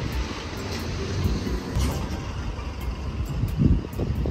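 Outdoor street ambience: a steady rushing noise with uneven low rumbling, swelling briefly shortly before the end.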